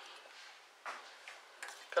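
Faint rustle of fresh rosemary sprigs being handled and lifted from a glass bowl, once about a second in, with a few light ticks near the end.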